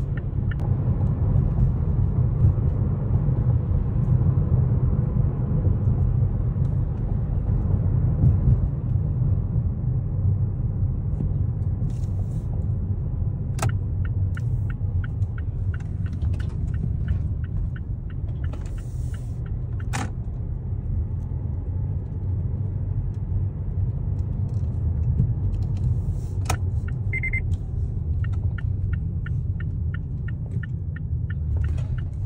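Car interior road noise: a steady low rumble from the moving car, with a few sharp clicks. Twice, about halfway through and again near the end, a run of evenly spaced ticks comes in, typical of the turn signal as the car turns at an intersection and into a parking lot.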